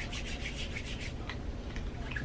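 Hands rubbing together to work in hand cream: quick rubbing strokes, about six a second at first, then fewer toward the end.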